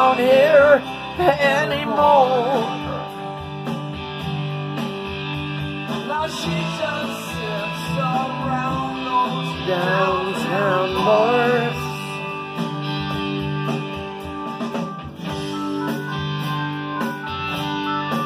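Playback of a blues-rock band backing track led by guitar, in an instrumental stretch with no sung lyrics.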